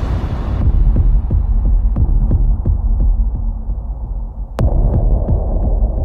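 Muffled dramatic sound-effect bed: a deep rumble with a low throbbing pulse, about three beats a second, like a heartbeat. A single sharp crack comes about four and a half seconds in.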